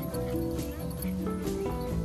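Background music: a melody of held notes stepping from one pitch to the next over a light, even beat.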